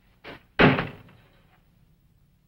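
A door shut hard: a faint knock, then a loud slam just over half a second in that dies away quickly.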